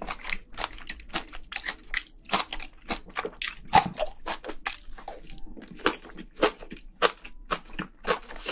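Close-miked chewing of spicy braised seafood and mixed-grain rice: a steady, irregular run of wet smacks and small clicks from the mouth, a few a second, with one louder smack near the middle.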